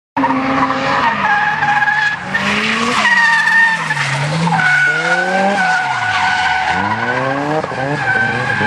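Drift car's engine revving up and down as its rear tyres squeal in a long sideways slide. Near the end the revs climb quickly several times in a row.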